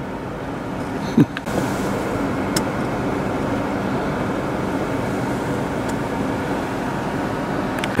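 Steady road and engine noise of a car being driven, growing a little louder about a second and a half in.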